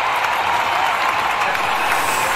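Crowd applause: a steady, even wash of clapping.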